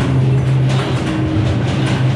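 A loud, steady low hum with a rumbling, train-like noise over it.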